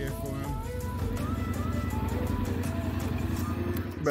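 Background music over a Yamaha Ténéré 700's parallel-twin engine idling steadily.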